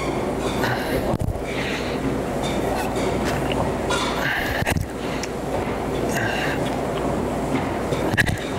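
A man breathing out hard in short bursts, several times, while lifting dumbbells, over a steady low hum of room noise, with a few light knocks.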